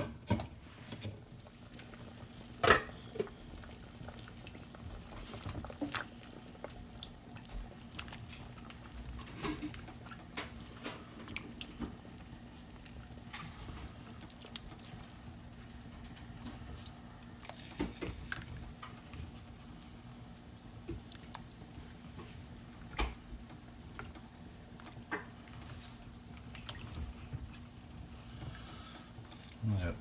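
A pot of vegetables and salt riblets at a rolling boil: bubbling water with scattered small pops and ticks over a steady low hum. A sharp clink comes about three seconds in.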